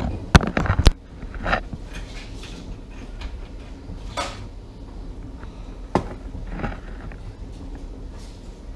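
Four sharp knocks of a kitchen knife chopping on a wooden cutting board within the first second, then a few scattered, quieter clunks of kitchen items being handled on the counter.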